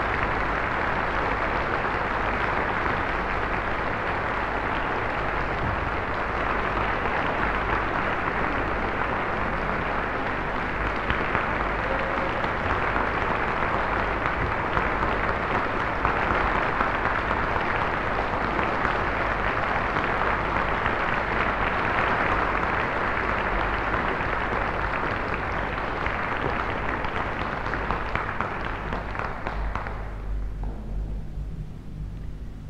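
Concert audience applauding steadily, the clapping dying away near the end.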